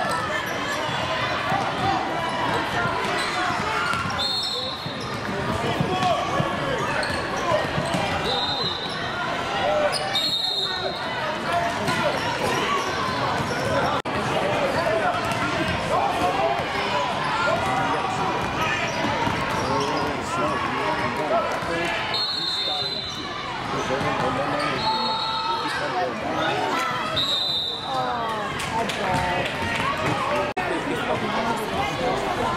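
Basketball dribbled on a hardwood gym floor amid steady chatter and shouting from players and spectators, echoing in a large hall. About six brief high-pitched chirps cut through at intervals.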